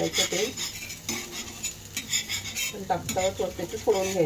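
A metal spatula scraping and clinking against an iron tawa in quick irregular strokes as kothimbir vadi pieces are turned while shallow-frying in oil, with a light sizzle of frying underneath.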